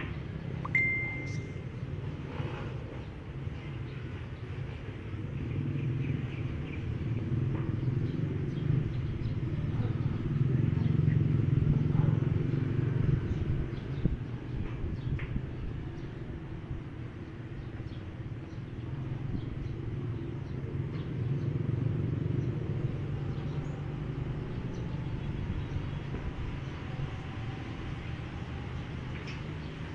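Electric hair clipper buzzing steadily as it cuts hair over a comb for a taper fade, the buzz growing louder in the middle.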